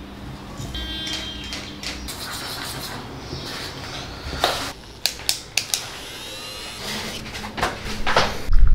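A metal spoon stirring oats and whey protein in a small stainless steel bowl, scraping and clinking against the metal, with a run of sharp clinks around the middle.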